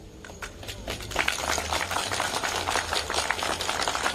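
Crowd applauding, swelling about a second in and carrying on steadily.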